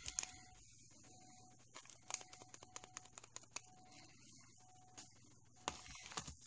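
Faint, scattered light ticks and patter of loose 1 mm hexagon glitter being poured into a plastic mixing bowl, over a low steady hum.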